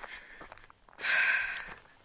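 A person's loud breathy sigh, a single out-breath about a second in that fades over under a second.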